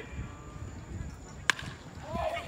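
One sharp crack of a bat hitting a pitched baseball about one and a half seconds in, with a brief ring after it, over faint background voices.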